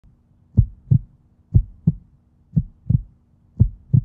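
Heartbeat sound effect: four pairs of deep thumps, one pair about every second.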